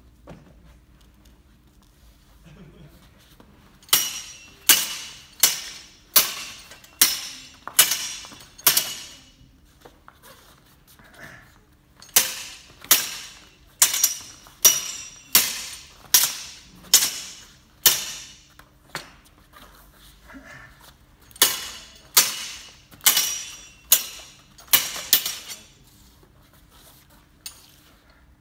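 Steel longswords striking blade on blade, each clash ringing briefly with a metallic note. They come in three quick runs of about seven to nine clashes, a little more than one a second: cuts being parried and answered with counter-cuts.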